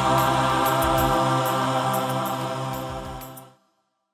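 Male gospel choir holding a long final chord over a backing track with a bass note and steady ticking percussion. It fades out and stops about three and a half seconds in.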